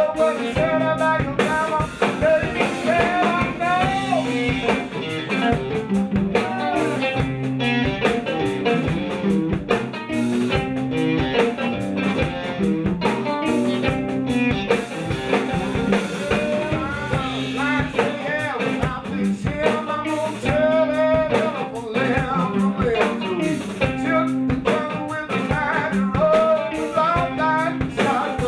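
Live blues band playing a steady groove: cigar box guitar, electric guitar and drum kit, with a man singing over it.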